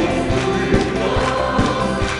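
Many voices singing a gospel praise song together with a live band, over a steady drum beat.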